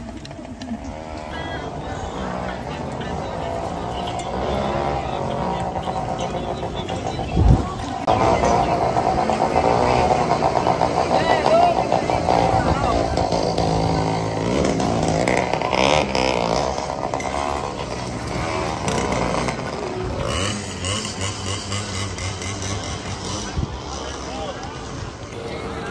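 Noise of a large crowd riding through the street: many young voices calling and shouting over one another, motorcycle engines running among the bicycles, and music playing, with one loud thump about seven and a half seconds in. The voices get louder from about eight seconds on.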